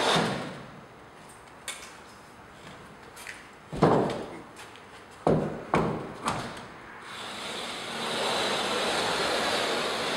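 Drywall flat box on an extension handle running along a ceiling joint: a steady scraping hiss that stops right at the start, then several sharp knocks in the middle as the box is set back on the joint, and the steady scraping hiss again from about seven seconds in.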